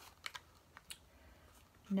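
A few light clicks and taps as a small paperboard contact-lens box is turned over in the hands.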